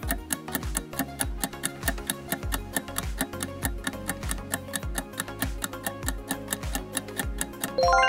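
Quiz countdown-timer music: a steady clock-like ticking beat, about four ticks a second, over low thumps. A chime starts right at the end as time runs out.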